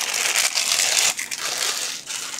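Plastic bag crinkling and crackling as a handheld multimeter is pulled out of it.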